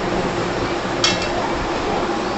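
A single light metallic clink of kitchen utensils about a second in, over a steady room hiss.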